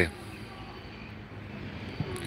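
A man's voice ending right at the start, then a faint, steady low background hum with no distinct events.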